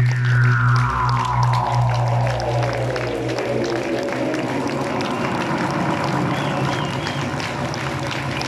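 The last notes of an electronic synthesizer piece. A low bass drone cuts off a few seconds in, while a layered electronic tone glides slowly down in pitch. Audience applause swells as the music ends.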